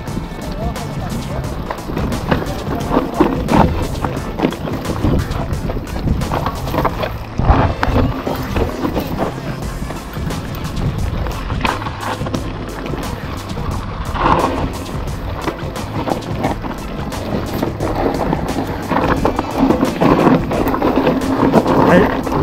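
Mountain bike riding down a rocky trail on loose, dry ground: tyres crunching over stones with a constant clatter of chain and frame knocking over rocks, and wind rushing on the action-camera microphone.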